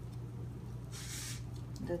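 Bamboo sushi rolling mat giving a brief rustle about a second in as it is pressed and rolled around the roll, over a steady low hum.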